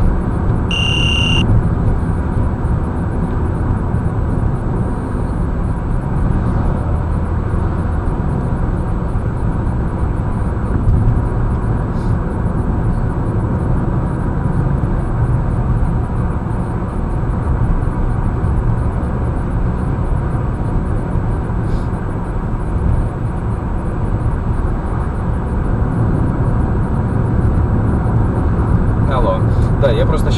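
Steady road and engine noise heard inside a car cruising on a highway, with a short electronic beep about a second in.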